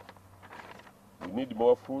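A steady low hum under a quiet pause, then a man's voice speaking a word in the second half.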